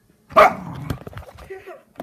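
Keeshond giving one loud bark about a third of a second in, followed by softer vocalising for about a second and a half.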